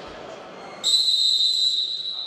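Referee's whistle blown once, one long blast starting about a second in, signalling the free kick to be taken.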